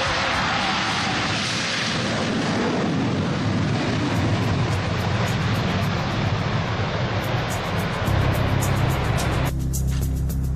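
Steady jet roar from a twin-engine F/A-18 Hornet accelerating down the runway on its takeoff roll, heard over background music. The roar cuts off suddenly near the end, leaving the music.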